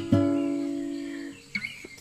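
Acoustic guitar: a chord struck once just after the start, left to ring and fade away over about a second and a half.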